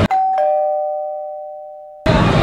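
Two-note ding-dong chime sound effect: a higher note, then a lower one about a third of a second later, both ringing on and slowly fading.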